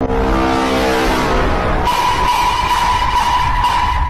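Loud, distorted meme sound effect: a heavy rumble under a stack of held tones, joined about two seconds in by a high steady tone that runs until it cuts off.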